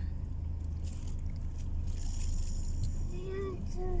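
Steady low hum of a car heard from inside the cabin, with a person's voice starting near the end.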